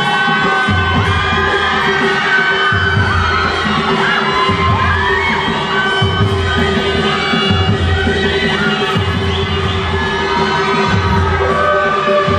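Nepali panche baja music: a shehnai (sanai) melody held over deep, repeated drum beats, with crowd voices.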